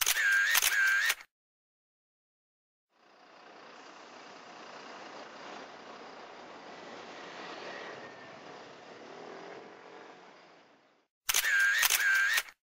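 Camera shutter sound effect, two quick shutter clicks, at the start and again near the end, marking cuts between shots. Between them, faint outdoor background noise fades in and out.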